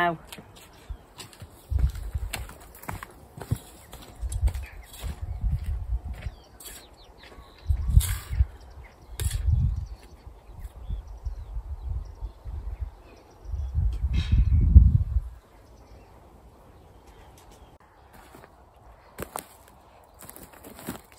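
Hand trowel digging into soil, with scrapes and sharp clicks against stones, and several low rumbling bursts of about a second each, the loudest a little past the middle.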